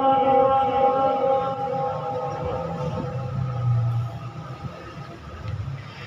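A man's Quran recitation in maqam Saba, amplified through a PA, holding the end of one long drawn-out note that fades away over the first two to three seconds. A low hum remains after it.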